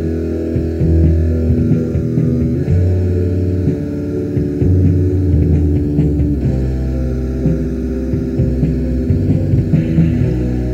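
Lo-fi raw black metal from a 1995 cassette demo: distorted guitar and bass play slow, held chords, with low notes that change every second or two over a steady low hum.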